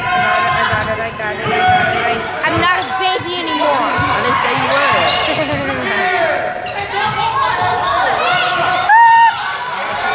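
Indoor basketball game sounds in a large gym: the ball bouncing on the hardwood court amid players' and spectators' voices calling out, with short squeaks of sneakers. There is a brief, loud, high call about a second before the end.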